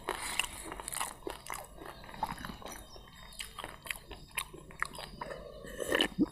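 A man chewing a mouthful of food close to the microphone, with irregular small clicks and crunches.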